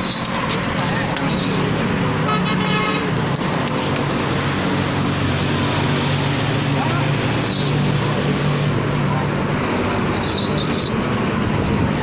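Busy market din of background voices and vehicle traffic, with a horn tooting briefly about two seconds in and a steady low engine hum through the middle.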